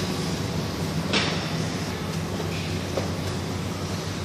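Steady machinery hum and hiss in a pump room, with a faint knock about a second in.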